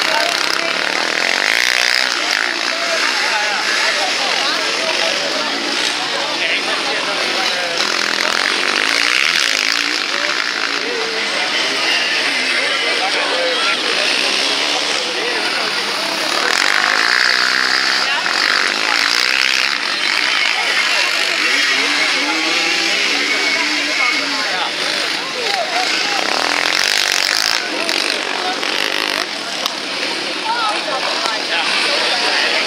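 Several racing quad (ATV) engines revving, their pitch repeatedly rising and falling as the quads accelerate through the bends, with several engines overlapping.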